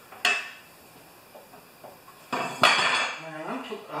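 Metal clanks and clinks as a steel rotary-mower blade and its fittings are handled and fitted back onto the mower: one sharp clank just after the start and two more a little past halfway.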